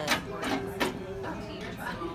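Hair-cutting scissors snipping a few times, sharp separate clicks, with faint voices in the background.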